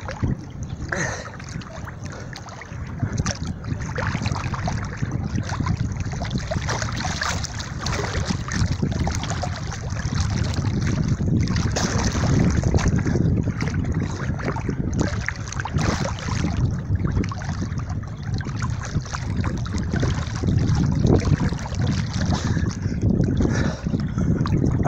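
Water splashing and sloshing right at the microphone as a swimmer strokes through choppy river water, with wind buffeting the microphone; a dense, uneven wash broken by frequent splashes.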